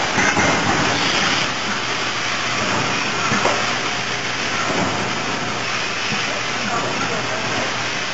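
Automated robotic packing line running: a steady machinery din with hissing, and a few faint knocks, while cartons are conveyed and bottles are picked and placed.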